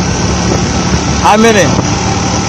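Steady engine and road noise from inside a moving vehicle, a low even hum, with a brief spoken voice about one and a half seconds in.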